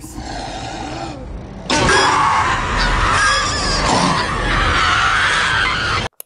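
Horror sound design from a commercial: a low rumble, then about two seconds in a loud, harsh screeching roar over a deep rumble, which cuts off suddenly at the end.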